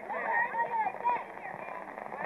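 Indistinct talking of nearby people, with no clear words.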